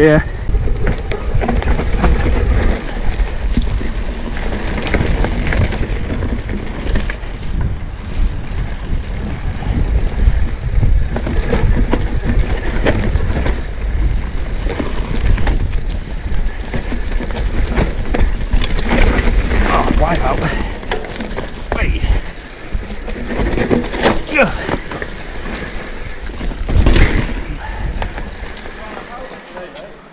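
Orange P7 steel hardtail mountain bike ridden down a rough dirt forest singletrack, heard through a camera mounted on the rider: a continuous rumble of tyres over roots and ruts, with the bike knocking and rattling at each bump. It quietens near the end.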